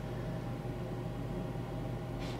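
Steady low hum with a faint hiss: room tone of a desk recording, with no other event.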